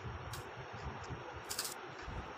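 Faint handling noise with a small click, then a short, sharp scrape near the end, as a knife cuts the soft coconut sweet against a steel tray.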